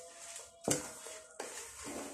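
Hands mixing a crumbly flour mixture in a large basin, with a soft rustling and two sharp knocks less than a second apart as the hands or the basin strike.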